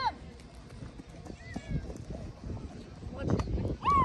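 Children's high-pitched shouts across a sports field: a short call about one and a half seconds in, and a loud shout falling in pitch near the end.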